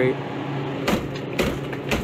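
Three sharp knocks and cracks, about half a second apart, as a hand digs and breaks at thick ice packed around a freezer evaporator's suction line, over a steady low hum.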